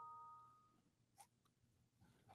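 Near silence: room tone, with one faint click a little past a second in.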